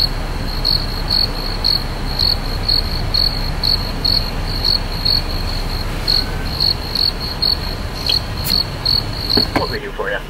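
Cricket chirping in even, high chirps about three times a second, over a steady low rumble.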